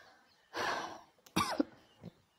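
A person coughing twice, the first a rough burst about half a second in, the second sharper with a falling voiced tail about a second later.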